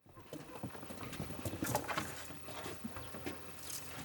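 Footsteps of a man walking on a wooden boardwalk: an irregular run of knocks and scuffs.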